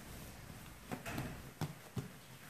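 Hands pressing and turning a ball of risen yeast dough on a countertop, knocking it back, with three soft thumps, the first about a second in and the last near the end.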